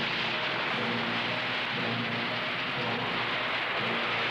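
A missile's rocket motor firing at launch: a dense, steady rushing noise, with faint music underneath.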